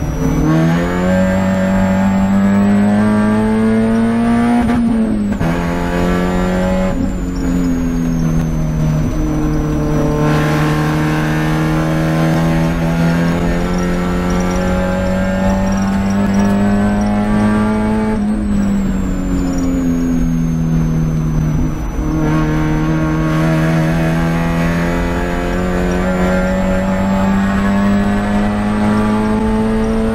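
Spec Miata's four-cylinder engine heard from inside the cockpit at racing speed, its note climbing under hard acceleration and dropping sharply at gear changes and braking several times over the stretch.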